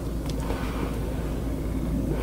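Steady low rumble with faint rustling and a couple of light ticks from hands handling a cardboard product box.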